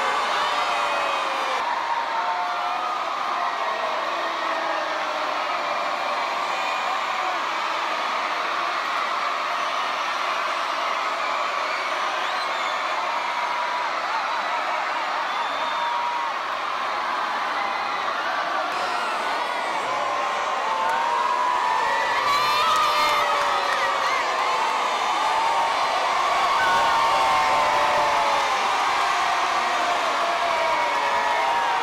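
A large crowd cheering and shouting, many high voices at once, swelling louder about two-thirds of the way through.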